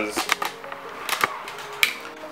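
A scatter of short, sharp clicks and taps, a few at the start, more about a second in, and a louder single click near the end.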